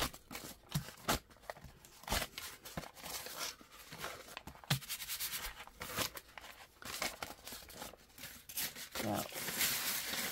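Crinkled paper sheet crackling and rustling in irregular bursts as hands press and rub it onto a paint-covered plate and peel it off.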